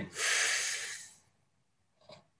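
A person drawing one deep breath in, a rush of air lasting about a second.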